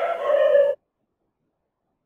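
A short held voice sound lasting under a second, cut off abruptly, followed by complete silence.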